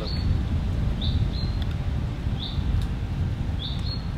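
A small bird repeats a short, high chirp roughly once a second in woodland, over a steady low rumble.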